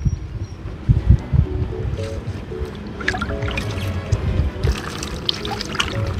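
Water trickling and splashing as fish are rinsed and handled in a wet concrete basin, under soft background music.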